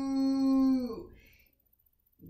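A woman's long, drawn-out imitation of a cow's moo, held on one steady pitch, then dropping and fading out about a second in.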